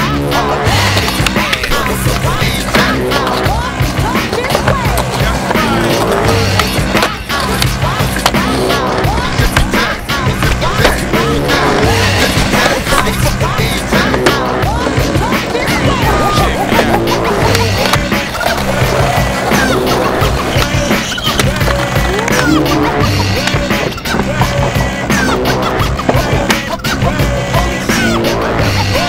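Skateboards rolling on concrete and paving, with the clack of tricks and landings, mixed under a music soundtrack with a repeating bass line.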